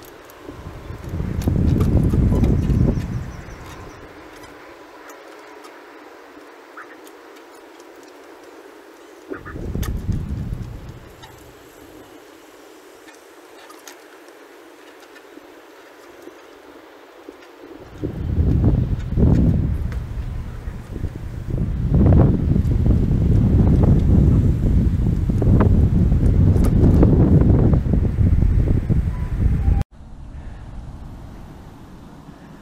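Wind buffeting the microphone in gusts: a low rumble about two seconds in, a shorter gust around ten seconds, then almost unbroken for the last twelve seconds.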